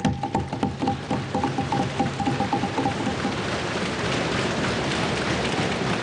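Members of the Indian Parliament thumping their desks and clapping: a dense, rapid patter of many knocks that starts suddenly and thickens into a steady rain-like roll, the House's customary applause. A steady high tone sounds through the first half and stops about halfway through.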